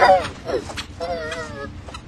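A person's voice distorted by a pitch-shifting, warbling audio effect. A wavering call at the start, a short sliding one about half a second in, and a longer wobbling one from about a second in.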